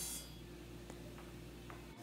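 Quiet low steady hum with two or three faint ticks. No saw or other tool is heard.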